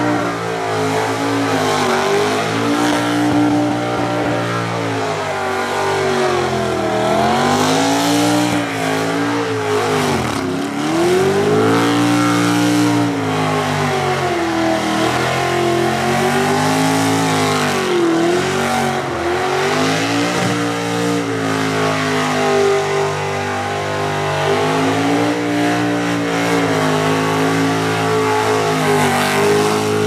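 Modified Ford Capri burnout car's engine held at high revs with its rear tyres spinning, the revs dipping and climbing again over and over, over a hiss of spinning tyres.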